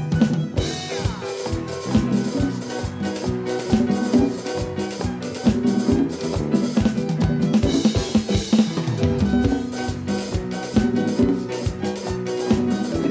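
Recording of a live Catholic worship band playing an instrumental passage between sung lines, with a drum kit keeping a steady beat.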